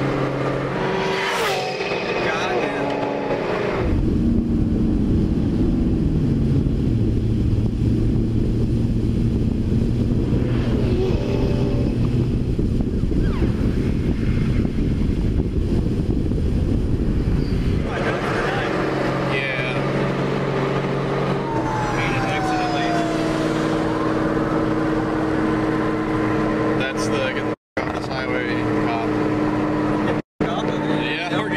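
Ford Mustang heard from inside the cabin while driven at very high speed: engine running, with a heavy low rumble of wind and road noise that dominates for a stretch in the middle. Voices of the occupants are heard along with it, and the sound cuts out briefly near the end.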